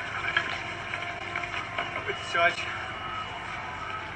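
Faint, indistinct voices over steady room noise, with a brief wavering voice-like sound about two and a half seconds in.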